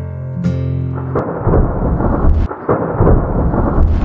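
Acoustic guitar music for about the first second, then it cuts to a loud thunder sound effect, a dense irregular rumble with no steady pitch.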